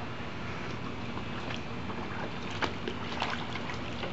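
A dog pawing and splashing in the water of a shallow plastic kiddie pool: a run of irregular splashes that grows busier and is loudest a little past halfway, over a steady background hiss.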